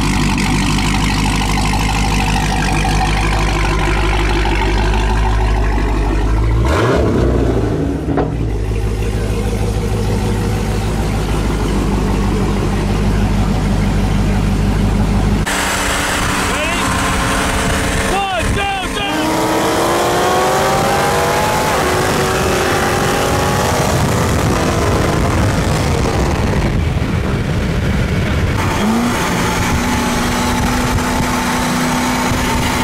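Supercharged Dodge Charger Hellcat V8 with an upper pulley and aftermarket exhaust idling with a steady rumble, then, after a cut, running at full throttle in a roll race, its pitch rising through the gears.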